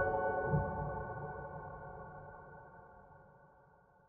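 Soft relaxing piano music ending: a last note is struck and the sustained chord rings on, fading away to silence over about four seconds.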